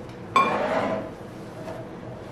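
A single glass clink about a third of a second in: a filled glass mason jar knocking against another jar as it is handled, ringing briefly and fading.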